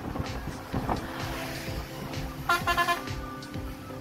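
Road noise from a vehicle driving along a highway, with a vehicle horn honking briefly in a few quick beeps about two and a half seconds in, under steady background music.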